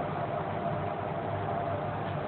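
Steady background room noise, an even hum and hiss with a faint steady tone and no distinct event.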